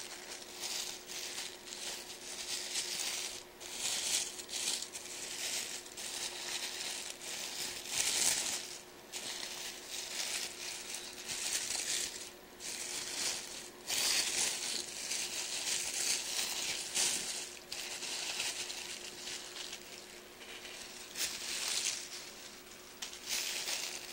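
Tissue paper crinkling and rustling as it is unwrapped by hand, in a continuous run of irregular crackles.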